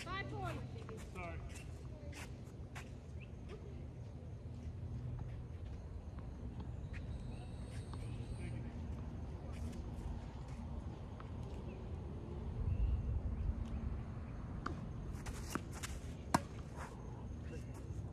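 Tennis ball struck by rackets during a rally on a hard court: sharp pops at irregular intervals, the loudest near the end, with footsteps on the court.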